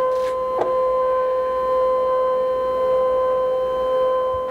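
Brother ScanNCut cutting machine scanning, its motor drawing the mat through past the built-in scanner with a steady whine. A light click about half a second in.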